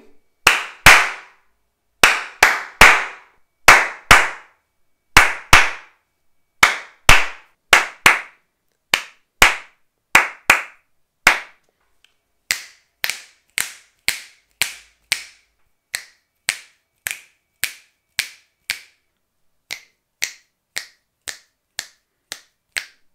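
Hand claps recorded close to a microphone in a bare, untreated room, as a test of its echo: a long series of sharp claps in a loose rhythm of pairs and threes, each followed by a short trail of room reverberation. The claps are louder in the first half and quieter from about halfway.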